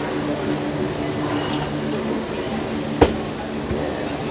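Steady mechanical hum with a few low steady tones, heard from inside a gondola cable car cabin moving through the station, with one sharp knock about three seconds in.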